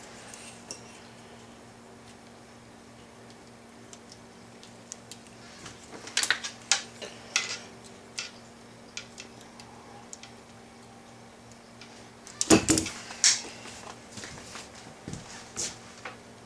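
Small metal clicks and clinks of alligator clips and a steel multitool being handled on a stone countertop, sparse at first, with a louder burst of clattering metal on stone about twelve and a half seconds in.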